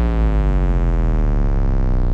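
Electronic music closing on a single sustained synthesizer note that slowly glides down in pitch, over a steady deep bass.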